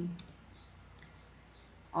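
One sharp computer click about a fifth of a second in, as an answer is submitted and the online quiz moves to its next question, followed by faint room tone.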